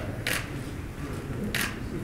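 Two short, sharp clicks a little over a second apart over a low murmur of room noise.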